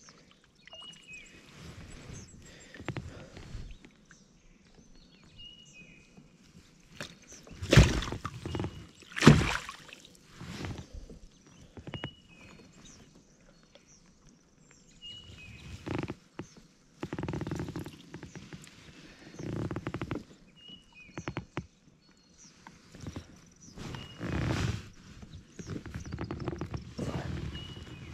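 Irregular knocks and thuds of a northern pike being handled in a landing net against a plastic kayak hull, the two loudest knocks about a second and a half apart around eight seconds in.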